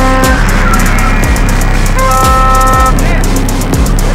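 A car horn blares in a steady, multi-tone blast that cuts off just after the start, then sounds again for under a second about two seconds in. Loud music with a steady drum beat plays throughout.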